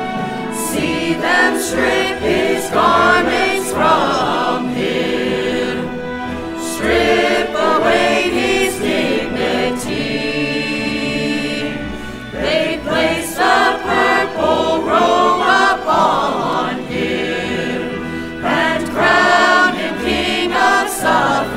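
Mixed choir of men's and women's voices singing with instrumental accompaniment. The singing comes in phrases, with short stretches of accompaniment alone between them.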